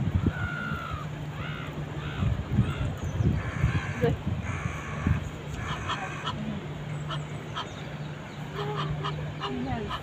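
Egyptian geese honking: several short calls in the first seconds, then two longer raspy honks about three and a half and four and a half seconds in, over a steady low hum.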